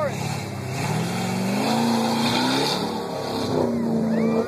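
Chevy Blazer's engine revving under load as the truck pushes through deep, sticky creek mud: the revs climb about half a second in and hold, ease off briefly near three seconds, then rise again.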